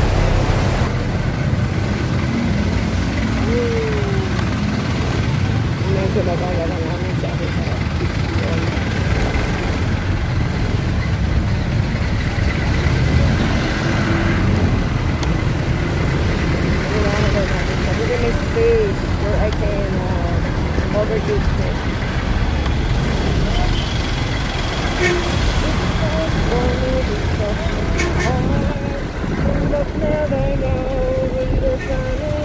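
Steady road and traffic noise heard on the move in city traffic: a continuous rumble of engines and tyres, with wind on the microphone.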